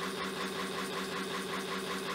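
The motor of a homemade LED persistence-of-vision fan display spinning at steady speed: a steady mechanical hum with a fast, even pulsing from the rotating blades.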